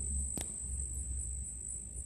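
An insect, cricket-like, trilling steadily at a high pitch with a faint regular pulse, over a low background rumble. A single sharp click comes just under half a second in.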